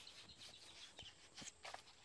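Near silence: faint outdoor riverside ambience with a faint bird chirp about a second in and a few soft clicks.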